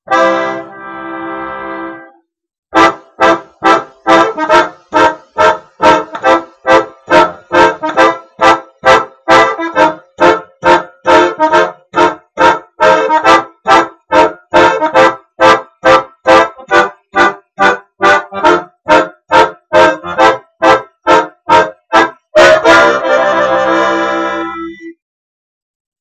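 Bayan (Russian button accordion) playing a blues chord progression in C major. One held chord opens it, then short detached chords follow at about two a second for some twenty seconds, ending on a long held chord.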